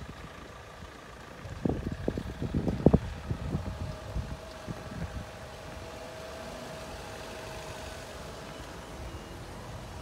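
Wind buffeting a phone microphone in uneven gusts for the first few seconds, then a faint, steady outdoor hum.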